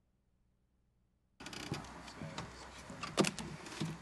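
Dead silence, then about a second and a half in the sound cuts in suddenly: a podium microphone going live, with rustling and a few knocks of handling noise.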